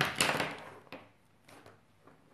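Plastic Copic marker pens set down on a wooden tabletop: a clatter about a quarter second in that fades quickly, then a few soft clicks as the pens settle.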